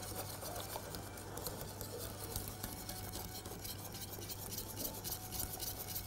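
Wire whisk stirring continuously around a stainless steel pot of thickening almond-milk pudding, a faint, rapid scratching of the wires against the pot's metal sides and bottom.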